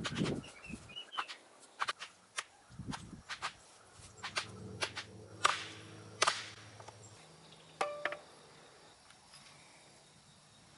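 A hammer striking a wooden block set on top of a wooden fence post: about a dozen irregular blows, the loudest in the middle, the last one about 8 seconds in.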